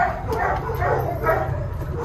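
Dogs barking in shelter kennels: about four barks roughly half a second apart, over a steady low hum.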